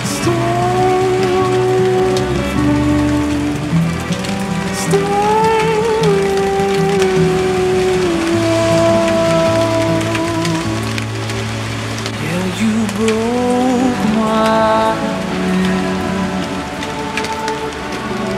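Steady rain falling and pattering on potted plants' leaves, mixed under slow background music with long held melodic notes.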